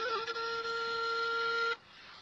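Instrumental background music: a flute holds one steady note for about a second and a half, then stops sharply, leaving a brief silence near the end.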